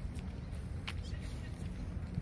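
Footsteps of someone walking on a paved path, a few sharp steps or taps, the clearest a little under a second in, over a steady low rumble.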